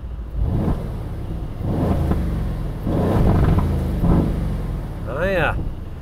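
The Aston Martin Vantage F1 Edition's twin-turbo V8, heard from inside the cabin in its sharper S Plus drive mode, its note swelling and dropping in several surges. A brief vocal sound comes near the end.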